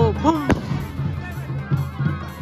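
An aerial firework bursting with a single sharp bang about half a second in, over music with a steady beat.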